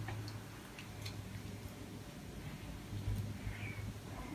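Faint soft ticks and light squishing of fingertips rubbing a thin foamy face cleanser over wet skin, a few scattered ticks near the start and again around three seconds in, over a low steady hum.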